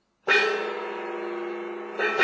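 A large gong struck once about a quarter of a second in, ringing on with a cluster of steady tones that slowly fade; a second strike comes at the very end.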